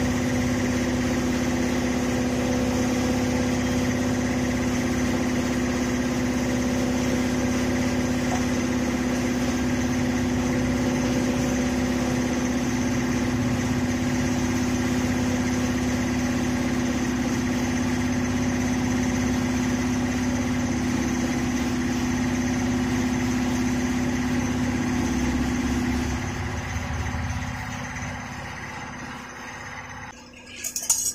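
A workshop machine running with a steady, even hum, dying away over the last few seconds.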